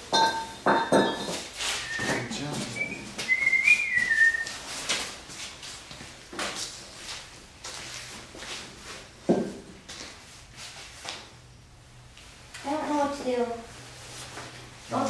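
Knocks and clunks of weights being handled and set into hanging plastic buckets, starting with a ringing metal clank. A few short whistled notes come about two to four seconds in.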